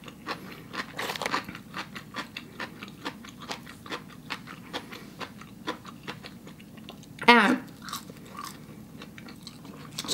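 A person chewing food, french fries among it, close to the microphone: a steady run of small wet clicks and crunches from the mouth. A short hummed voice sound comes about seven seconds in.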